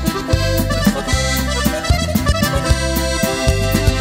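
Norteño band playing an instrumental passage between sung verses: button accordion carrying the melody over bass notes and a steady drum beat.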